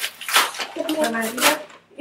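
Talking, with the crinkle and rustle of a paper packet of cake mix being handled, and light kitchen clatter.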